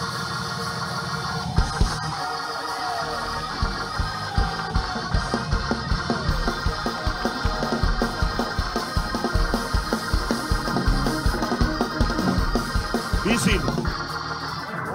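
Live church praise band playing: sustained guitar and keyboard chords, then a fast, driving drum beat that comes in about a second and a half in and carries on.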